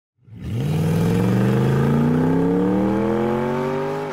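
A car engine revving up in one long pull, its pitch climbing steadily from about half a second in and dropping away right at the end.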